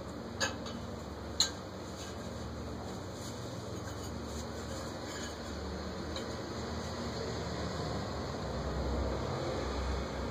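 Steady low background rumble, with two short clicks, about half a second and a second and a half in.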